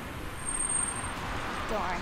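Steady road traffic noise from passing vehicles, with a voice starting just before the end.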